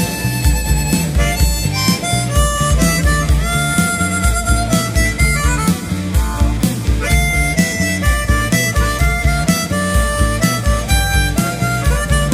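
Rock urbano band playing an instrumental break, a harmonica solo with held and sliding notes over a steady bass and drum beat.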